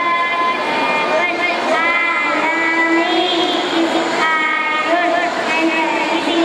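A child's high voice through a microphone and PA, speaking or chanting lines with several long, drawn-out held notes.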